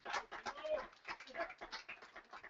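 Faint, scattered calls and exclamations from a congregation answering the preacher, in short irregular bursts.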